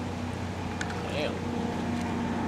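An engine running steadily with an even hum, typical of a motorboat's outboard motor on the river.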